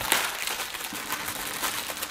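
Plastic wrapper of a Honeywell P100 filter cartridge crinkling and crackling as it is torn open, a quick run of small crackles.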